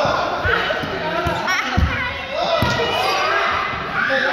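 A group of students talking and calling out, echoing in a sports hall, with about four dull thuds on the floor during the first three seconds.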